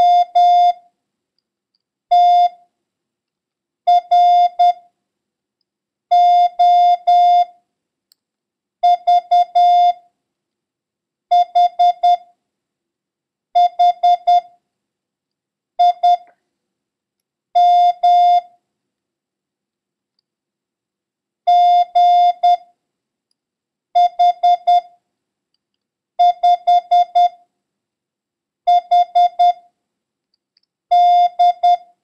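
Morse code practice tone: one steady beep keyed into dits and dahs, sending a random run of letters and numbers weighted toward the letter H, one character about every two seconds, with a longer pause about two-thirds of the way through.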